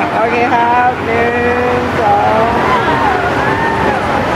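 Several people talking at once, voices overlapping over a steady background of crowd chatter.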